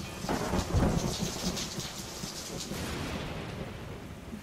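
Thunderstorm sound effect: a rumble of thunder in the first second, then steady rain that slowly fades.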